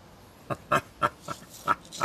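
A person laughing in a run of short, breathy bursts, starting about half a second in.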